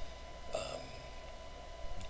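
Quiet room tone with a faint steady hum and a thin high tone. About half a second in, the narrator says a single hesitant "um".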